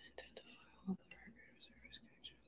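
A faint whispered voice with a few soft clicks; a brief low sound about a second in is the loudest moment.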